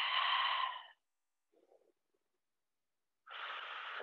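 A woman's audible breathing close to the microphone: a breath fades out about a second in, and another breath starts near the end.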